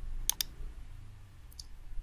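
Computer mouse button clicking: a quick pair of sharp clicks, then a fainter single click near the end, over a faint low hum.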